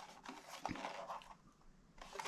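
Faint handling noise of a plastic VFD (variable frequency drive) casing being turned over in the hands: light rubbing and small clicks, with one sharper click a little before the middle.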